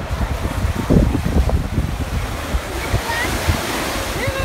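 Small waves breaking and washing up onto a sandy beach, with gusts of wind rumbling on the microphone; the hiss of the surf swells in the second half.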